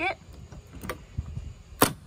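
Clicks of a Gunner Kennel door's push-button lock being pressed: a faint click about halfway, a few light knocks, then a sharp, loud click near the end.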